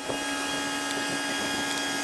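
Steady mechanical drone with a constant low hum and higher whine, most likely a mobile crane's engine running while it hoists a load.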